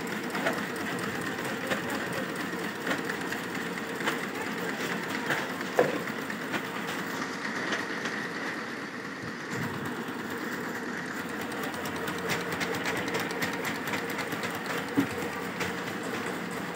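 Incense-stick making machinery running, a steady mechanical clatter of rapid clicks over a hum, with a couple of sharper knocks.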